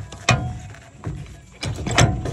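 An old steel RV jack clanks once as it is set against a deflated tire. From about a second and a half in, its metal parts rattle and click.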